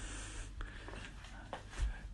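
Faint rubbing and handling noise from a phone being carried, with a few light clicks and a soft low thump near the end.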